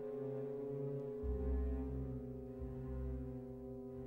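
Orchestra holding a sustained, dark chord of steady tones, with a deep low note swelling in about a second in and returning near the end.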